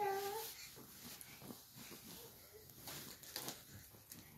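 A small dog whines briefly, with a slightly falling pitch. Then come faint knocks and rustling as a folding cot's metal frame is handled.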